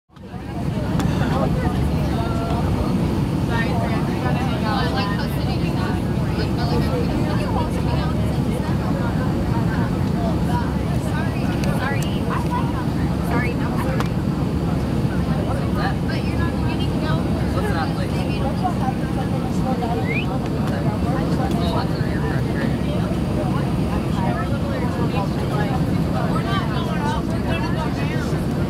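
Steady cabin rumble of an Airbus A319-100 airliner on final approach, heard from inside at a rear window seat: engine and airflow noise. Passengers chatter loudly over it throughout. The sound fades in over the first second.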